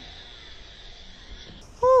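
Faint steady background noise, then near the end a loud exclamation of "ooh" from a person, falling in pitch.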